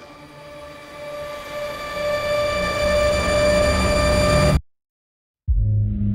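Trailer sound design for an airliner going down after "brace for impact": a low cabin rumble swells steadily louder under a sustained high drone. It cuts off abruptly into about a second of silence, then a low music bed comes in.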